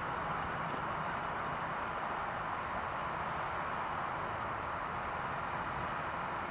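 Distant jet airliner engines at takeoff power during the takeoff roll and lift-off, heard as a steady, even rushing noise.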